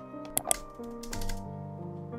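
Background music with a few sharp clicks and taps as a plastic Logitech K380 keyboard is handled against its cardboard box; the two loudest clicks come about half a second in, with smaller taps a little later.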